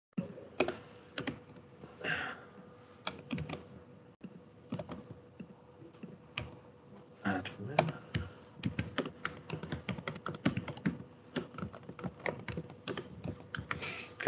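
Typing on a laptop keyboard: quick, irregular key clicks, with faint voices in the room now and then.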